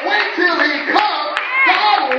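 Church congregation clapping, with many voices calling out together over the claps.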